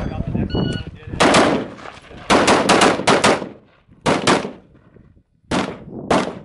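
Rifle fired in quick strings of shots with short pauses: a single shot, a pair, a rapid run of about six, then further pairs. A brief ringing tone follows soon after the first shot.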